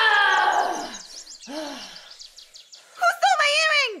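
A woman's high-pitched, drawn-out cry of dismay that slides down in pitch, a short cry about a second and a half in, then another long wailing cry near the end that drops away.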